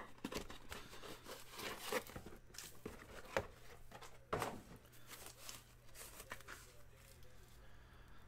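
Faint rustling and crinkling of a paper envelope and a foam packing sheet being handled and pulled open, with a few soft ticks.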